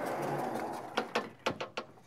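Vertical sliding blackboard panels being pulled along their runners: a rumbling slide for about a second, then a quick run of knocks and clacks as the panels move and settle.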